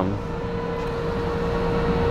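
Steady mechanical drone from background machinery, with a held mid-pitched tone over a low hum, slowly getting louder.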